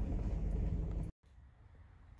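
Low, steady rumble of a truck driving slowly along a bumpy dirt road, heard from inside the cab. It cuts off suddenly about a second in, leaving only a faint hush.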